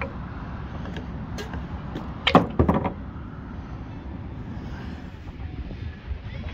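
Steady outdoor rumble with a few sharp knocks about two and a half seconds in.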